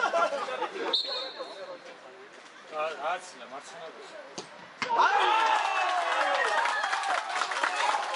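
A referee's whistle gives one short blast about a second in. Just before five seconds a football is struck once with a sharp thud. Straight after, spectators break into loud shouting and cheering at the goalkeeper's save.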